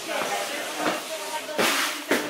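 Indistinct voices in the background, over a steady hiss, with a short louder rush of noise near the end.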